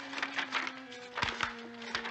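Background music from the TV score: low notes held steadily, shifting to a new pair of notes about a second in. Light clicks and rustles of a paper note being unfolded.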